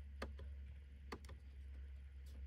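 Faint, sharp clicks of the steering-wheel keypad buttons being pressed to scroll through the instrument-cluster menu, about three presses, two of them close together just past the middle, over a steady low hum.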